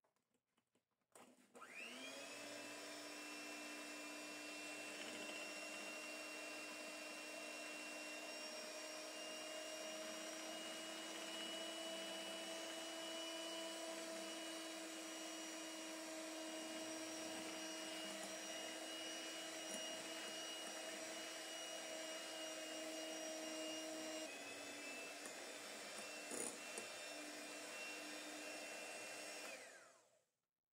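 Electric hand mixer with twin wire beaters running steadily in a glass bowl of egg and sugar cake batter. It spins up about a second and a half in, its pitch drops slightly a few seconds before the end, and it stops at the very end.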